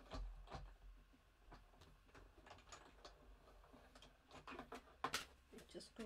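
Faint, irregular clicks and taps of small hard objects being handled on a craft desk, with a couple of sharper knocks near the end.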